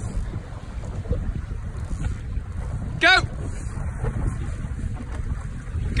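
Wind buffeting the microphone, a steady low rumble, with water moving around small boats; one short spoken word about three seconds in.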